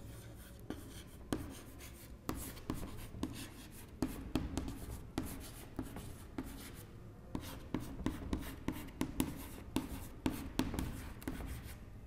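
Chalk writing on a chalkboard: a quick run of sharp taps and short scratches as the letters are formed. There is a brief lull a little past halfway.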